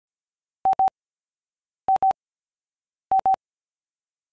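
Three pairs of short electronic beeps, all at the same mid pitch, the pairs spaced a little over a second apart.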